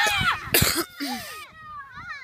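Children shouting and calling out in high voices on a football pitch, with a short, loud burst of noise about half a second in.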